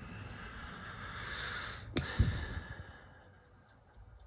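Furnace draft inducer blower running with an airy whoosh, then a sharp click about two seconds in and the whoosh fades away as it winds down. The pressure switch it should pull closed is staying open.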